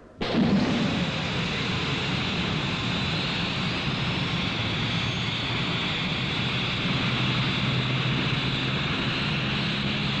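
Rocket-engine sound effect for a vertical lift-off: it starts suddenly, then runs as a steady rushing noise over a low drone. A faint rising whine comes in a few seconds in.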